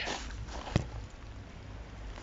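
A car door being opened, with a single sharp click about three quarters of a second in, over a low steady background.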